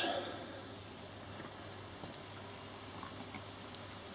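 Faint steady electrical hum with an even hiss, and one small click near the end.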